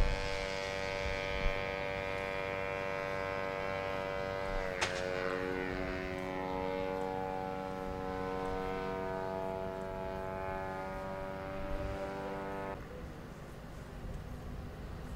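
Small propeller-driven aerial target drone's engine running at high revs, a steady buzzing tone. About five seconds in there is a sharp crack as it leaves its rail launcher, after which the engine's pitch drops a little as it flies off. The sound cuts off suddenly about a second before the end.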